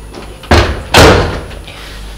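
A door slamming: two loud bangs about half a second apart, the second longer with a short ring after it.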